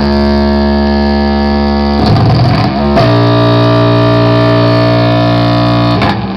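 Loud live noise music: a dense, distorted drone of many steady pitched layers held without a break, churning into a harsher noisy burst for about a second some two seconds in before settling back into the drone.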